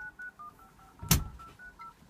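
Touch-tone telephone dialing: a quick run of about ten short DTMF beeps, roughly five a second, as a phone number is keyed in. There is one loud thump about a second in.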